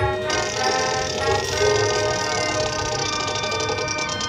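Marching band playing held brass chords, with a bright crash of percussion coming in about a third of a second in and ringing on.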